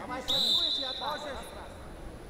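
A single long, steady high whistle lasting about a second and a half, loudest at its start and fading, over voices calling out.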